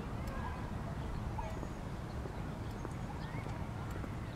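Walking footsteps on a concrete sidewalk over a steady low rumble, with a few faint short bird chirps scattered throughout.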